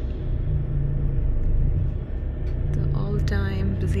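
Steady low engine and road rumble heard from inside a moving coach. A woman's voice starts near the end.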